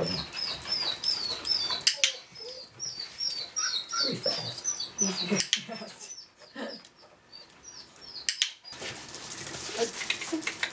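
A quick run of short, high chirps, several a second, over scattered light knocks and taps from a small dog nosing hollow PVC pipe scent boxes on wooden boards. The chirps stop near the end.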